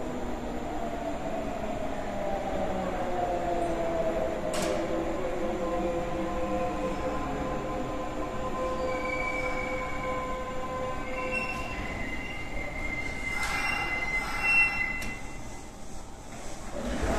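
Kintetsu 5800 series electric train pulling into an underground platform: its motor whine slides down in pitch as it slows, then high-pitched wheel and brake squeal sets in over the last several seconds. A short loud burst comes near the end as it stops.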